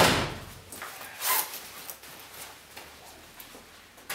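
A car door slammed shut, its sharp knock fading at the very start, followed by a softer knock about a second in, then quiet room sound in a small garage.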